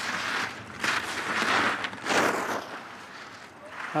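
Alpine race skis carving giant slalom turns on hard-packed snow: the edges hiss and scrape, swelling with each turn and fading between them.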